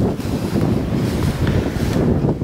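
Wind buffeting the microphone outdoors: a loud, uneven rumble.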